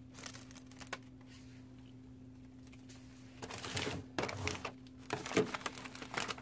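Plastic shrink wrap crinkling in several short bursts as hands handle it, after a couple of faint clicks in the first second, over a steady low hum.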